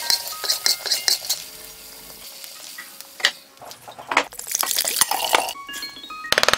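Peanuts frying in oil in a wok and being stirred, sizzling, with quick scraping and clinking strokes that are busiest in the first second or so. A louder stretch of noise comes near the end.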